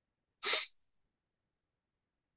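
A single short, sharp burst of breath from a man about half a second in.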